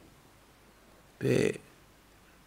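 A man's voice saying one short syllable about a second in, in a pause of otherwise quiet room tone.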